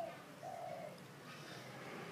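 Dove cooing: a short note, then a longer held one about half a second in.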